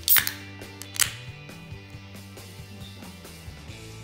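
A beer can's pull tab cracking open, heard as a sharp burst right at the start and a second burst about a second later, over steady background music.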